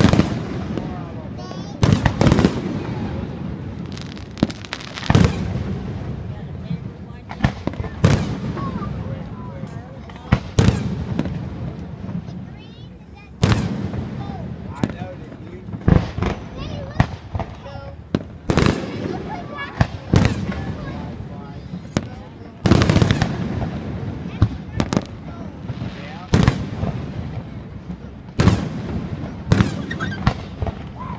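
Aerial fireworks display: shells bursting irregularly, roughly one a second, each bang trailing off, with a short lull near the middle. Crowd voices run underneath.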